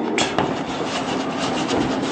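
Chalk scratching on a chalkboard while writing, a rapid run of short scratchy strokes.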